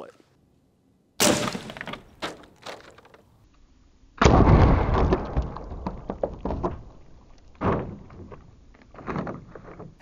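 A 9mm AEA Terminator air rifle fires about a second in with a single sharp crack. About three seconds later comes the loudest sound, a heavy hit as an 81-grain 9mm pellet strikes a full plastic gallon water jug and knocks it off the table. Scattered knocks and splashing water follow.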